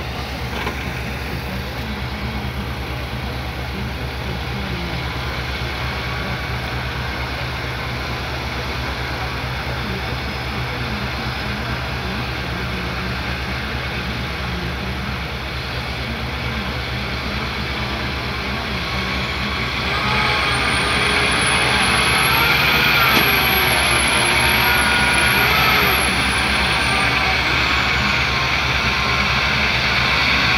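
Diesel engine of a MAZ-6501B9 dump truck running under load as it drives out of deep mud and standing water, getting louder about two-thirds in, with a high whine rising and falling over it.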